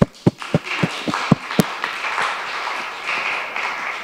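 Audience applauding: a few separate claps at first, quickly filling out into steady applause.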